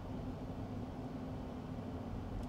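Electric car driving on a cold road, heard from inside the cabin: a steady low road and tyre rumble with a faint steady hum.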